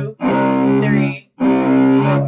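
Cello's open C string bowed in long, even strokes on one repeated low note, two strokes of about a second each with a brief break between. The note stands in for a double bass's open E string.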